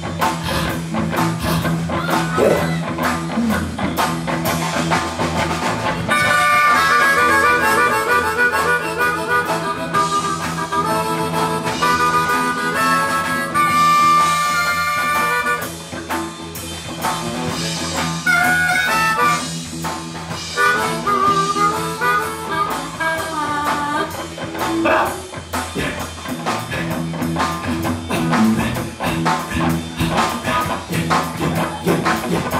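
Amplified blues harmonica played through a hand-cupped vocal microphone over a live band with electric guitar and drums. It plays warbling trills and long held notes, then bent, wavering notes in the second half.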